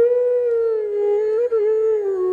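Bansuri, a bamboo transverse flute, holding one long note that slides slowly down in pitch, with a brief upward flick about one and a half seconds in before settling lower.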